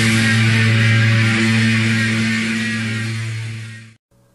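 Heavy metal music: a distorted electric guitar chord held and ringing out, fading away to silence near the end.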